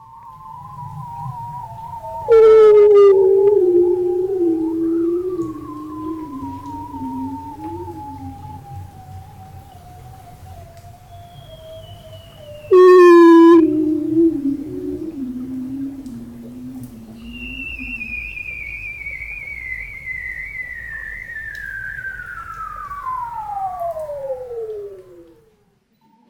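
Hydrophone recording of bearded seals singing under Arctic sea ice: long warbling trills that slide slowly down in pitch and overlap, with two loud short higher calls about two seconds and thirteen seconds in, and a last trill that falls from high, dropping more steeply near the end. With no wave action on the surface above, the songs sound as if they are in a room.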